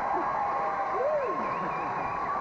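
Indistinct voices on set, with one rising-and-falling vocal sound about a second in, over a steady high-pitched hum.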